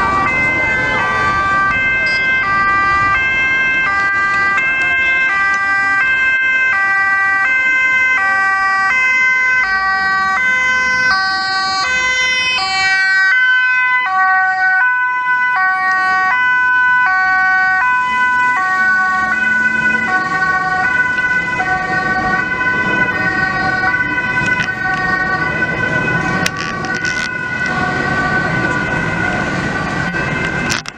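Dutch ambulance two-tone siren sounding continuously as the ambulance approaches and passes close by, its alternating high-low notes steady over a constant high tone. About halfway through the pitch drops as it goes past.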